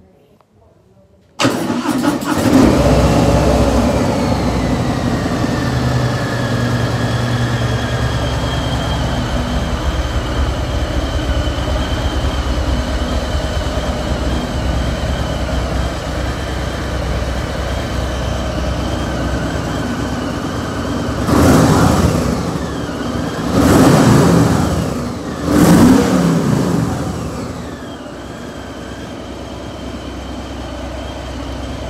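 Harley-Davidson Fat Boy 107's Milwaukee-Eight 107 V-twin starting about a second and a half in, then idling steadily. Near the end the throttle is blipped three times, each rev rising and falling back, before it settles to a lower idle.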